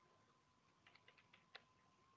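Near silence with a faint steady high tone, broken about a second in by a quick run of five or six faint computer keyboard key clicks, the last one the loudest.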